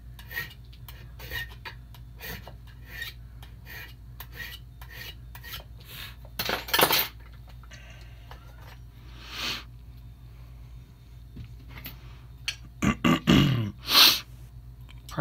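A warding file is worked by hand across a metal key blank in short strokes, about two or three a second, trimming a key that is a little too long. A few louder metal clanks and clatters follow as the key and lock are handled, the loudest near the end.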